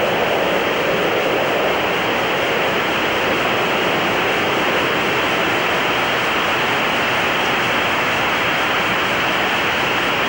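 Steady hiss of an open radio communications channel carrying no voice, with a faint hum under it.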